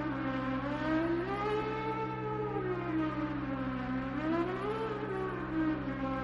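A siren-like wailing tone gliding slowly up and down, one rise and fall about every three seconds, over a steady low drone.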